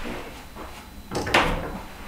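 Double closet doors being pulled open, with a sharp clack a little over a second in.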